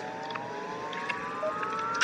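A slowly rising electronic tone, several pitches layered together and gliding steadily upward, from a TV commercial's soundtrack heard through a phone's speaker.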